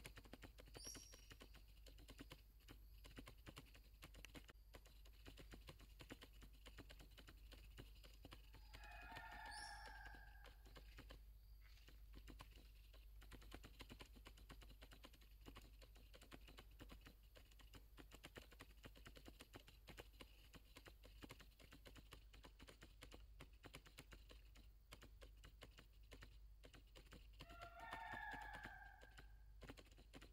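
Near silence: quiet forest ambience with constant faint clicking and a faint steady high tone. Two short pitched calls stand out, one about nine seconds in and one near the end.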